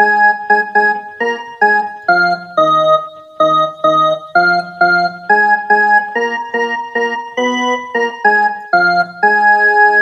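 Casio mini keyboard playing a slow single-note melody, one key at a time, at about two notes a second: the mukhda (opening refrain) of a Bhojpuri song.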